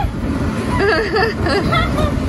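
A steady low rumble from the electric blower that keeps an inflatable bounce house up, with a child's high voice calling out in the middle.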